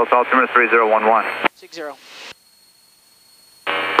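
Air traffic control radio speech through the aircraft's headset audio, cut off by a short burst from a second voice. After that comes about a second and a half of quiet before another radio call starts near the end.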